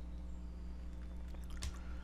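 A steady low electrical hum, with a few faint clicks from computer input as a line of code is selected for copying.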